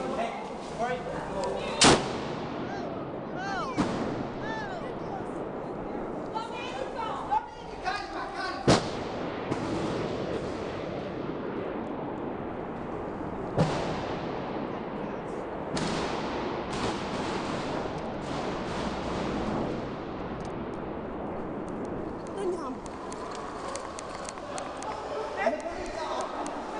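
Kalashnikov rifle shots echoing through the museum's halls: several single sharp reports several seconds apart, the loudest about two seconds in and about nine seconds in. Under them are people's voices and the rustle of a handheld camera on the move.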